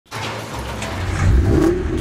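Vehicle engine sound effect: a low running rumble that grows louder and revs up about a second in, as a cartoon fire truck pulls out.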